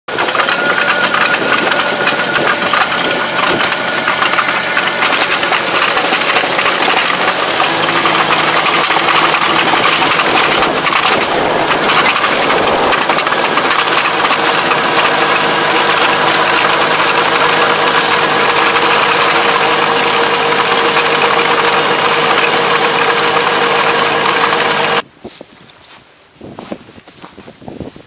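Tractor engine running steadily with a Kobashi GAIA XRS751 levee coater working the paddy levee, its rotor churning soil. The engine tone shifts about seven seconds in, and the sound cuts off suddenly about a second before the end.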